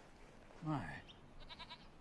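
A young goat bleating once, a short wavering call near the end.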